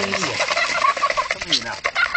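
A flock of domestic ducks calling over one another, many short overlapping calls as they crowd round to be fed.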